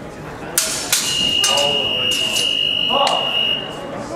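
Longswords clashing in a fencing exchange: two sharp strikes about half a second apart, then a few lighter clacks, with short shouts. A steady high-pitched tone begins about a second in and holds for nearly three seconds before cutting off.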